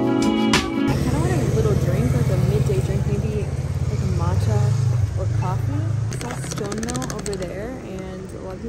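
Background music cuts off about a second in. Then a steady low rumble of street traffic runs under a woman's voice.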